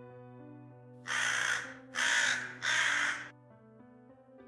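Three caws from a crow-type bird, each about half a second long, in quick succession, over soft background piano music.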